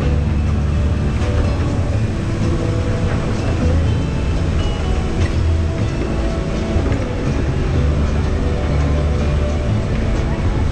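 Radiator Springs Racers ride car running along its track at speed: a steady, loud low rumble with faint clicks and ticks scattered through it.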